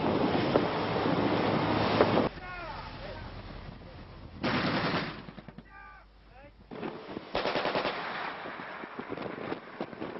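Bursts of rapid automatic gunfire from a coast guard patrol boat firing warning shots into a ship's hull at sea, the loudest burst a little under five seconds in and more firing from about seven seconds on.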